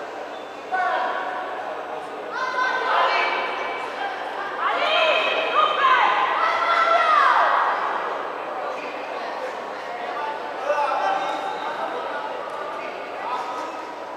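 Voices shouting and calling out in a large, echoing hall, with long drawn-out calls that rise and fall in pitch, loudest from about four to eight seconds in.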